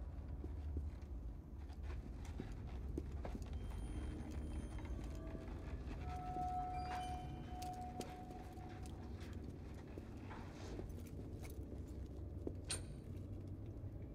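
Soft, irregular footsteps and small knocks over a steady low rumble. A clear tone is held for about two seconds starting about six seconds in, and there is a sharp click near the end.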